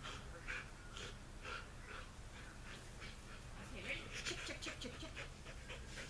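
A dog panting steadily close to the microphone, about two pants a second.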